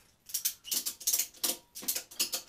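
Ratchet tie-down strap buckle being worked by hand, its pawl clicking in a quick, irregular series as the strap is tightened around a bike trainer's leg.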